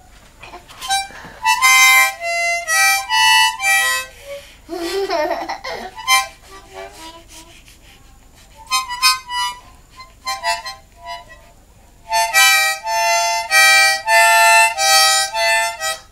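A harmonica blown by a small child in short blasts of several notes at once. There are three runs of blasts with gaps between them, and the last run is the longest and loudest.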